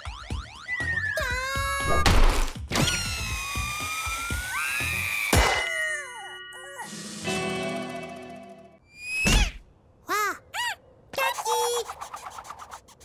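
Cartoon sound effects over music: springy boings and gliding whistle-like tones, with heavy impacts about two, five and nine seconds in. Short squeaky character vocalisations come near the end.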